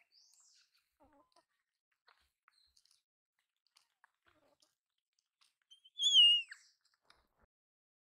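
A single high-pitched animal call about six seconds in, wavering and then falling steeply in pitch over about half a second. Faint scattered small clicks come before it.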